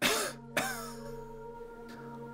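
A man coughing: one harsh burst at the start and a second about half a second in, over a low sustained music chord that sets in with the first cough.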